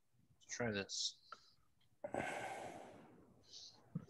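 A person's long sigh, a breath out over the call microphone that starts suddenly about two seconds in and fades away, after a single spoken word.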